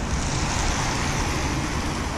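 Steady street noise: a continuous hiss of road traffic on wet streets in the rain.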